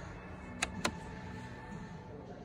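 Rotary headlight switch on a Volkswagen Tiguan dashboard clicking twice through its detents as it is turned back to Auto, the clicks about a quarter second apart, over a faint steady background.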